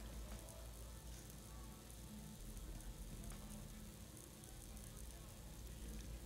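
Very quiet room tone: a faint steady low hum and no distinct sound.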